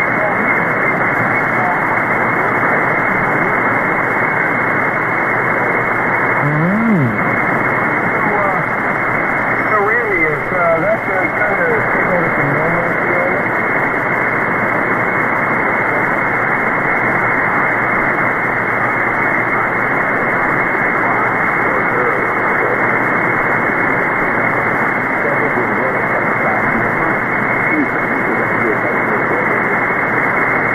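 SDRplay RSPduo receiver tuned to the 160-metre ham band at 1.930 MHz, giving loud, steady static hiss through a narrow voice filter. A faint, weak ham voice comes and goes in the noise, clearest about ten seconds in.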